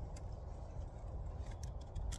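A few faint clicks as a pocket knife shaves a pencil-thick jaboticaba scion down to a flat wedge, over a steady low rumble.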